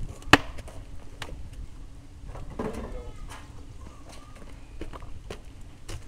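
A toddler's footsteps on pavement with scattered light taps. A single sharp knock about a third of a second in is the loudest sound, and a child briefly vocalises near the middle.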